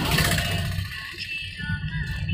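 Car engine and road rumble heard from inside the cabin while driving, briefly louder at the start.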